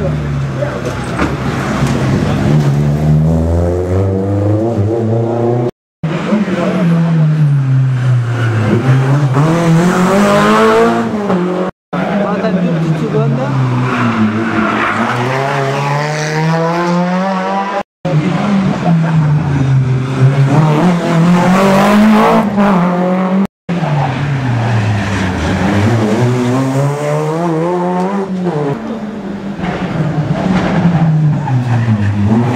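Rally car engines on a closed stage, heard in several short passes cut together. In each pass the revs fall as the car brakes for the junction, then climb again as it accelerates away.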